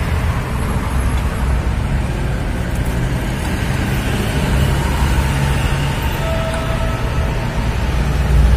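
Car engine idling, a steady low running sound.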